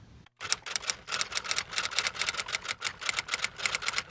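Typewriter sound effect: a rapid, even run of sharp key clacks that starts about half a second in and keeps going to the end, matching text being typed onto a title card.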